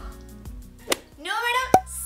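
Background music with steady low tones under a woman's speech, cut by two short sharp clicks, one about halfway through and a louder one near the end.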